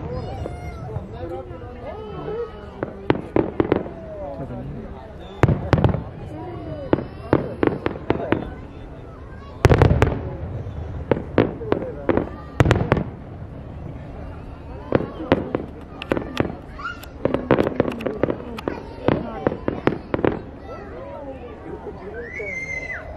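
Aerial fireworks bursting in a display. Heavy booms come near the start, about five and a half seconds in, near ten seconds and near thirteen seconds, with rapid strings of crackling bangs in between. People's voices carry on underneath.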